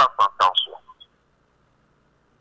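Speech that stops about a second in, followed by about a second of near silence: a pause in the talk.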